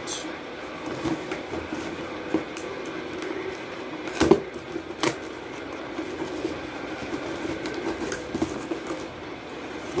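A cardboard shipping box being handled and turned over on a table: rubbing and scraping of cardboard, with two sharp knocks about four and five seconds in.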